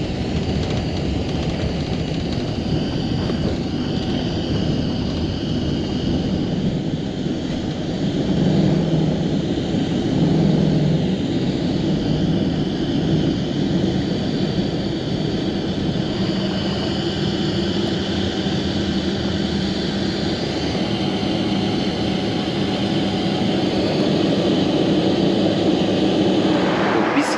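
Boeing 777 jet engines at takeoff power heard from inside the cabin through the takeoff roll, lift-off and climb: a steady loud rush with a low hum, swelling a little about eight seconds in.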